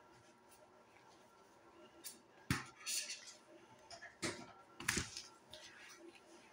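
Handling noise close to the microphone: black costume fabric rustling, with a few soft knocks as a foam mannequin head is dressed in a Ghostface hood. After a quiet start there are five or so short bursts, the loudest about two and a half seconds in and again near the five-second mark.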